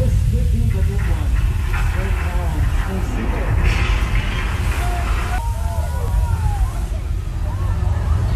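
Heavy, loud rumbling of a theme-park earthquake special effect in a mock subway station, with a hissing rush about four seconds in that cuts off a second and a half later.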